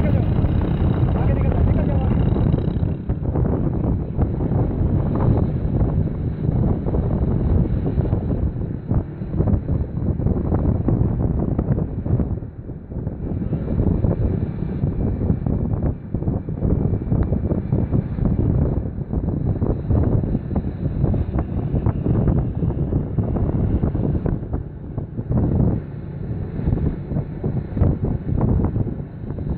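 Wind buffeting the microphone of a moving vehicle, over the running of a vehicle engine, as the camera keeps pace with the bicycle pack.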